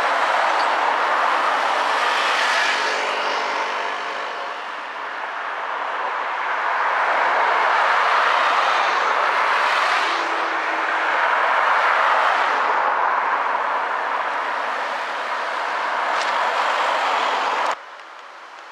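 Road traffic passing on a busy road: cars, a van and a motorcycle going by in turn, the noise swelling and easing as each one passes. It cuts off suddenly near the end.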